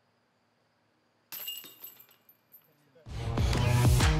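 A disc golf putt strikes the basket's metal chains: a sudden jingling crash that rings and dies away with a few light clinks. Music with a steady beat starts near the end.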